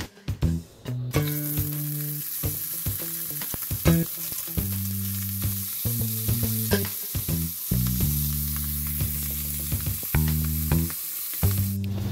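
Food frying in hot oil in a cast-iron skillet: a steady sizzle that starts about a second in, with background music underneath.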